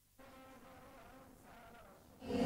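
Very faint music with a wavering, buzzy pitched tone, starting a fraction of a second in after near silence.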